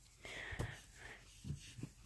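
Faint handling noise of plush toys being moved by hand over carpet, with a few soft thumps, and a breathy exhale in the first second.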